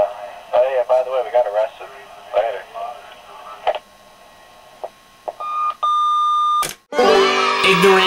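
A voicemail message played back through an answering machine's small speaker, the caller's voice thin and tinny; the message ends about four seconds in. A couple of clicks follow, then a short beep and a longer steady beep as the playback finishes, a click, and music starts near the end.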